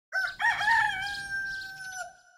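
A rooster crowing once: a few quick wavering notes, then one long held note that slowly falls in pitch and fades.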